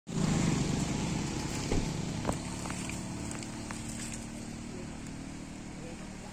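An engine running steadily, loudest at the start and slowly fading, with a couple of sharp clicks just before and after the two-second mark.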